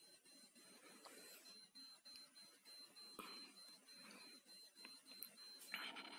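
Near silence: faint room hiss with a thin, steady high-pitched whine and a few barely audible ticks.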